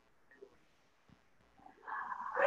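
Near silence over an open call line, then near the end a loud, pitched vocal sound starts and rises.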